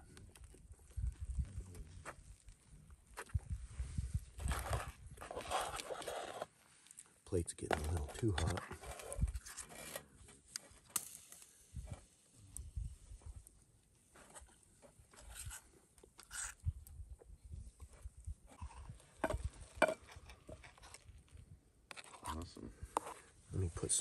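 Quiet camp-cooking handling sounds: a metal fork scraping and clicking in a steel frying pan of eggs, and the pan shifted on a folding wood-burning stove, in scattered short knocks and rustles, with faint voices.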